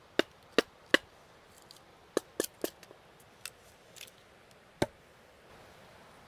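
A series of sharp, irregular wooden knocks and taps, three in the first second, a quick cluster a little after two seconds, and a last one near the end, from a hickory axe handle and steel head being struck and knocked on a wooden chopping stump.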